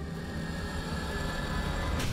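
A steady rushing noise with a faint held tone, growing slowly louder.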